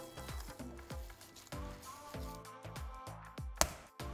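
Background music, under the soft squishing of wet hands kneading a ground beef, onion and pepper mixture in a glass bowl, with one sharp click near the end.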